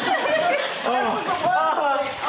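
Several voices talking over one another, with chuckling mixed in.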